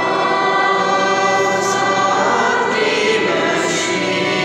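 Choir singing a hymn over steady, sustained accompanying chords.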